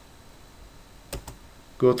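Computer mouse click: two quick sharp clicks close together, a button press and release, a little over a second in.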